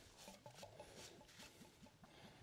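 Faint liquid pouring from a glass bottle into a small glass, with quiet irregular glugs and light ticks.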